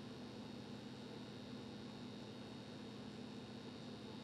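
Faint steady hum and hiss with a constant low tone and no distinct events: room tone.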